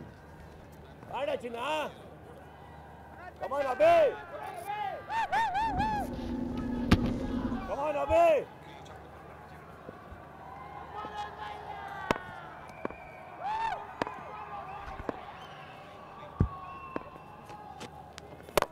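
Voices shouting and whooping in short bursts, with wavering calls repeated several times, in the first half; after that, quieter background voices with a few sharp claps or knocks.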